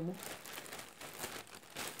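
Thin clear plastic carrier bag rustling and crinkling as a hand rummages inside it, an irregular run of small crackles.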